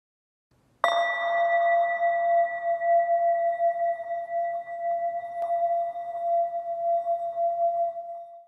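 A singing bowl struck once about a second in, its tone ringing on with a slow wavering swell and fading out just after the end. A faint click falls about halfway through.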